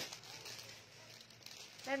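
Faint crinkling of a plastic bag as a garment is unwrapped and pulled out of its packaging.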